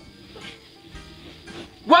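Quiet pause between lines of stage dialogue with only faint room tone, then a man's voice begins speaking near the end.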